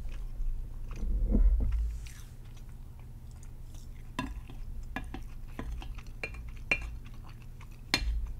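Close-miked eating of mapo tofu: a wooden spoon scrapes and knocks against a plate, and there is chewing and mouth sounds. A string of sharp clicks follows in the second half.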